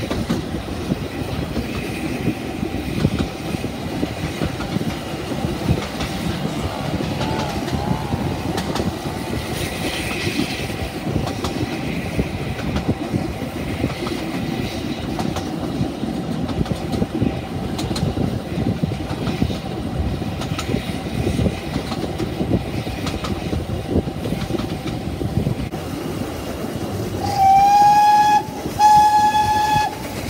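Narrow-gauge railway carriages running along the track with a steady rumble and rattle. Near the end the steam locomotive's whistle sounds twice in quick succession, the first blast rising slightly in pitch as it opens.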